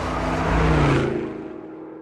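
Car sound effect, an engine revving, used as a segment-transition stinger; it fades away over the second half.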